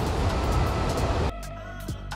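Steady rush of shallow creek water running over a riffle. A little past halfway it cuts off suddenly and gives way to electronic background music with a low steady hum and sharp beats.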